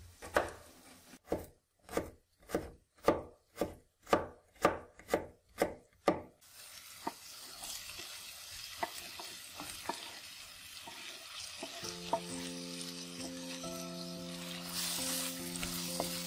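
A kitchen knife dicing a vegetable on a wooden cutting board, about two cuts a second, for the first six seconds. Then chopped vegetables frying in a clay pot, a steady hiss, with soft music coming in about halfway through.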